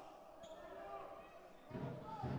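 A handball bouncing on an indoor court, heard faintly under the low background noise of the hall.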